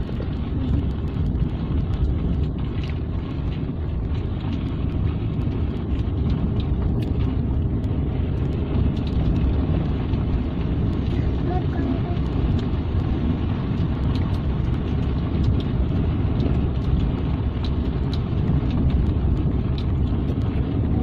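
Car driving along a rough, narrow asphalt road, heard from inside the cabin: a steady low rumble of engine and tyres on the road surface, with a few faint ticks and rattles.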